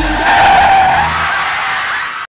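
Tyres screeching in a skid, a sustained squeal that is loudest about half a second in and then eases off.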